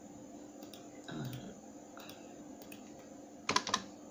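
Light clicking at a computer: a few faint clicks, then a louder pair of clicks near the end. A brief low sound comes about a second in.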